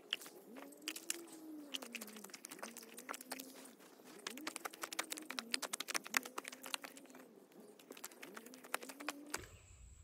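Wet clay squelching and popping under bare feet as it is trodden and mixed: many small, sharp, irregular pops. Under them runs a faint low tone that rises and falls over and over.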